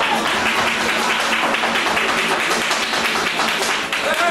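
Flamenco percussion: rapid, dense percussive tapping with no singing, in a flamenco performance.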